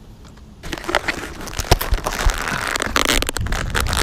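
Handling noise on an action camera: from about half a second in, fingers grip and rub the camera body right at its microphone, giving dense crackling, scraping and knocks.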